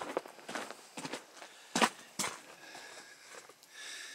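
Footsteps on packed snow: a series of irregular steps, the loudest two a little under two seconds in.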